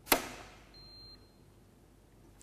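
Residual current device (RCD) in a consumer unit tripping with a single sharp snap under a times-five (150 mA) test current, followed about a second later by a faint, short, high beep. The trip comes very fast, a sign of a working RCD.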